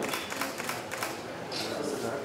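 Camera shutters clicking in quick succession, a rapid run of sharp clicks in the first second, as photographers shoot a posed group photo.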